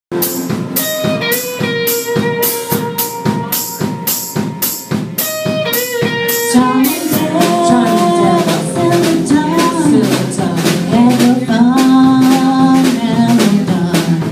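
Live band with a female lead singer performing a song: an even drum beat of about three hits a second under singing, then guitars, bass and keyboard filling in about six and a half seconds in.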